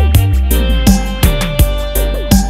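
Instrumental digital reggae riddim with a heavy bassline and steady drums, with quick falling-pitch electronic drum hits repeating through the beat.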